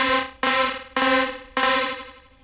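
Four snare-like drum hits about half a second apart, played through Ableton Live's Simple Delay set to a very short 17-millisecond delay time. The delay gives each hit a ringing, pitched, robotic tone.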